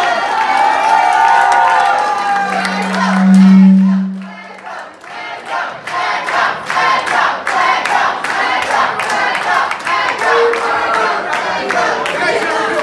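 The end of a live band's song with shouting voices, then a loud low note held for about two seconds a couple of seconds in; after it the audience applauds and cheers.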